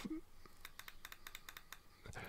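Fire button of an Eleaf iStick Mix box mod pressed five times in quick succession, a run of faint sharp clicks; five clicks switch the mod off.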